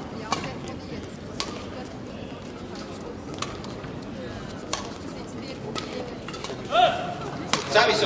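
Badminton rally: a shuttlecock struck back and forth by rackets, sharp cracks a second or two apart, over a steady crowd murmur in a sports hall. Near the end a short rising squeal, the loudest sound, stands out.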